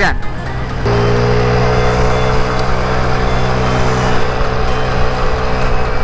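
Mondial Wing 50cc scooter engine running while riding, over wind and road noise. About a second in, the engine note gets louder and then holds a steady, slightly rising pitch.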